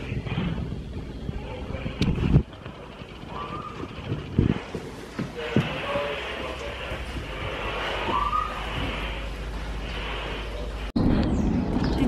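Low steady hum in a darkened room, dropping out for a few seconds, with faint hushed voices and a few short rising whistle-like calls a few seconds apart. Near the end it cuts sharply to louder outdoor talk.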